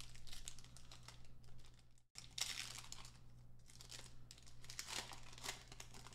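Foil wrapper of a Panini trading-card pack crinkling and tearing as it is ripped open by hand, over a steady low hum. The sound breaks off for an instant about two seconds in.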